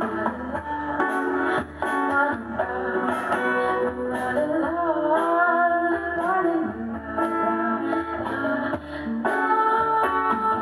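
Strummed acoustic guitar with a solo voice singing a melody over it, most clearly in the middle.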